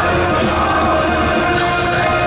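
A live rock band playing loudly in a dense, steady wall of sound: electric guitars, bass and drums, with a voice singing over them.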